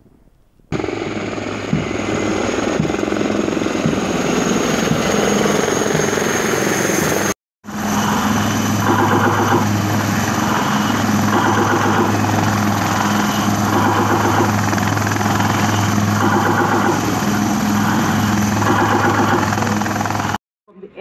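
Military helicopters flying overhead with a steady rotor and turbine noise. After a brief cut about seven seconds in, a helicopter hovers close by with its rotor beating evenly over the engine noise.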